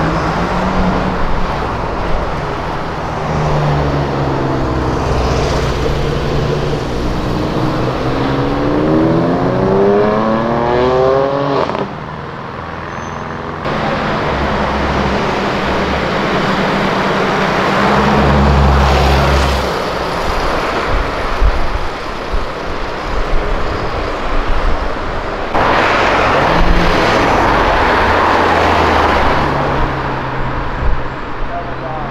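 Cars passing in street traffic. One car's engine accelerates hard, its pitch rising steadily for several seconds before the sound cuts off suddenly about twelve seconds in, followed by steady traffic rumble.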